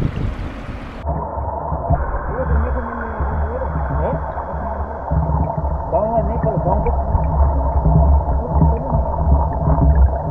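River water running over stones, heard in open air for the first second, then suddenly muffled and low when the camera goes under water. Under water it is a steady low rumble with many small warbling gurgles of the current.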